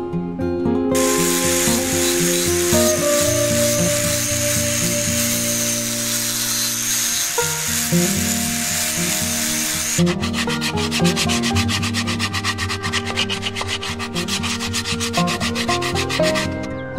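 Angle grinder fitted with a sanding pad sanding teak wood: a dense, steady grinding hiss with a high whine from about a second in until about ten seconds. It then gives way to fast, rhythmic rubbing strokes until near the end, over background guitar music.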